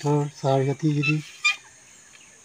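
A man speaking in short phrases with his voice low and steady in pitch, breaking off about a second and a quarter in, followed by a brief high bird chirp.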